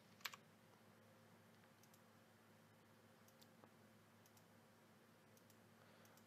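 Near silence: faint room tone with a handful of quiet computer clicks, one clearer click just after the start and a few fainter ones later.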